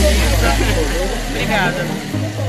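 Women's voices in conversation, over a low sustained bass note of background dance music that fades out towards the end.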